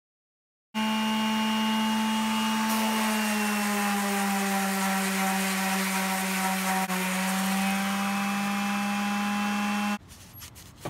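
Electric random orbital sander running steadily while sanding a wooden post: a motor whine over the hiss of sandpaper on wood. It starts abruptly about a second in, dips slightly in pitch a few seconds later, and cuts off suddenly at the end.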